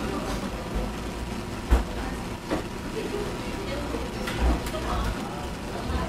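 Low steady hum of an indoor shop with faint background voices, broken by a couple of light knocks.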